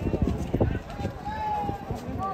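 People talking, with irregular dull thuds of horses' hooves on a dirt track.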